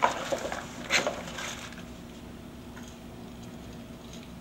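Handling noise from a coaxial cable and its ground-kit lead: a sharp knock at the start and another about a second in, with some rustling, then only a low room hum.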